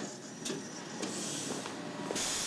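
A glass shop door swinging open as someone walks through: a few sharp clicks about half a second apart over a steady hiss.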